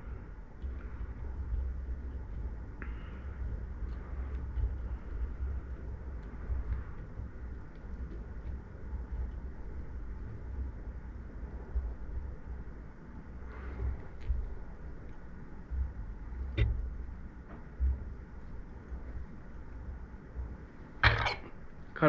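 Faint handling noise from pearl tubing being wrapped tight around a hook held in a fly-tying vise: an uneven low rumble with light rustles and an occasional small click.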